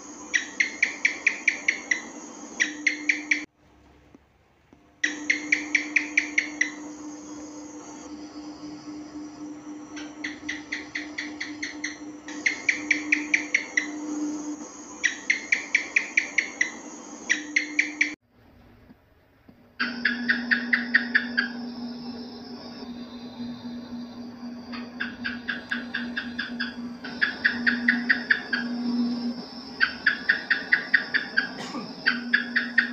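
House geckos (cicak) chirping in runs of quick, sharp clicks, each run lasting about a second and a half and coming every few seconds, over a steady low hum. The sound cuts out briefly twice, about 3.5 seconds in and again after about 18 seconds.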